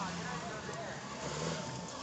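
Many spectators talking over each other, with an off-road jeep's engine running low underneath.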